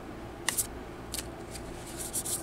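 A deck of oracle cards being shuffled by hand, its two halves slid into each other. There is a crisp swish about half a second in and a fainter one just after a second.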